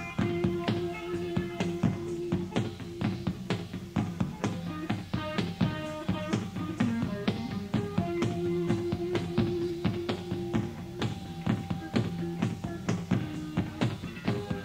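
Rock band playing live through an instrumental passage: a drum kit keeps a fast, steady beat under sustained bass and guitar notes, with no singing.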